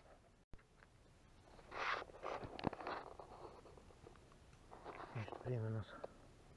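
Rustling and brushing of clothing against a body-worn camera as it is shifted and handled, with a few sharp clicks about two and a half seconds in. A short voiced sound comes near the end, and the audio cuts out briefly about half a second in.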